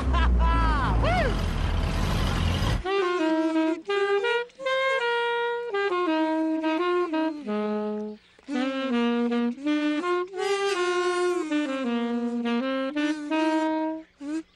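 A man laughing over the rumble and wind of an open-topped car. About three seconds in this cuts off suddenly and a saxophone plays a slow, solo melody of held notes in short phrases.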